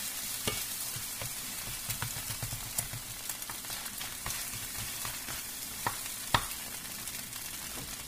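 Eggs sizzling in a non-stick frying pan while a spatula stirs and scrapes them, with scattered sharp taps of the spatula against the pan, the loudest a little past the middle.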